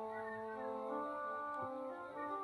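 Soft instrumental background music: several long held notes sounding together, shifting slowly from one pitch to the next.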